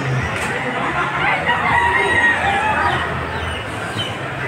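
A gamecock crowing once, starting about a second in and lasting about a second and a half, over a steady background din.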